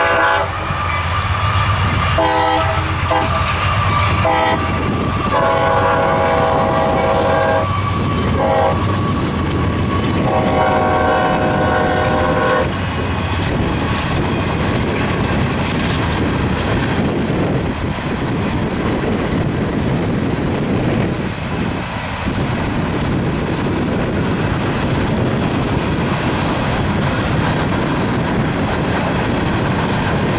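Multi-note horn of the lead CSX GE AC4400CW locomotive sounding for the grade crossing: a run of long blasts with one short blast before the last, ending about thirteen seconds in. After that comes the steady noise and clickety-clack of a mixed freight's tank cars, hoppers and boxcars rolling past.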